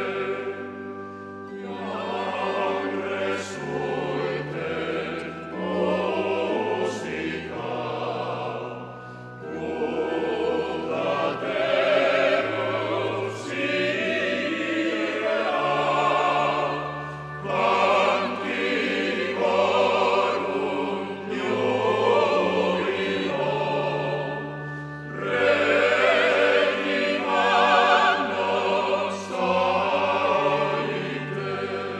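Male voice choir singing a slow piece in parts, with held notes over a low bass line, in phrases that swell and fall away several times.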